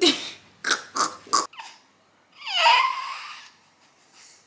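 Infant fussing: a few short, sharp vocal sounds in the first second and a half, then one longer whining cry about two and a half seconds in that dips in pitch and levels off.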